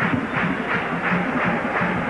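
Stadium crowd noise, a steady din, with a band playing short held notes underneath.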